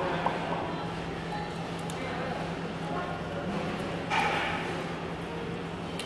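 Indoor room tone with a steady low electrical hum, a few faint clicks of people eating, and one short pitched vocal sound about four seconds in.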